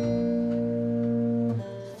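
Acoustic guitar chord held and ringing, with a low upright bass note under it, then dying away about a second and a half in.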